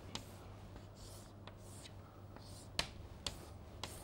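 Chalk drawing straight lines on a chalkboard: several sharp taps as the chalk meets the board, with short scrapes between them, over a low steady hum.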